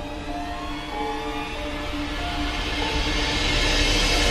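Trailer score music: low held notes under a swelling riser that builds steadily in loudness toward a hit.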